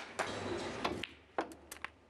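Sharp clicks of snooker balls and cue: a click at the start and several more in the second half, with a short burst of noise lasting under a second near the beginning.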